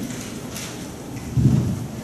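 Steady hiss of room noise over the church's sound system, with a short low rumble about a second and a half in.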